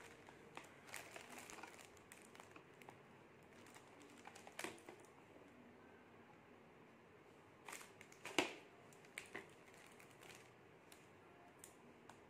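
Faint, scattered small clicks and taps of makeup handling: a fingertip dabbing eyeshadow onto the eyelid and a plastic compact mirror being held. The sharpest tap comes a little after eight seconds in.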